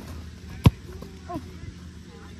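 A soccer ball kicked once close by: a single sharp thump about two-thirds of a second in.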